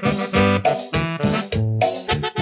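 Korg iX300 arranger keyboard playing an upbeat instrumental passage: piano-like chords over a moving bass line with a steady beat.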